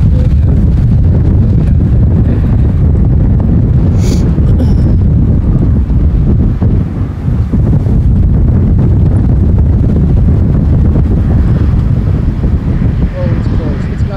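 Strong wind buffeting the camera microphone: a loud, steady low rumble with gusty flutter throughout, and one brief click about four seconds in.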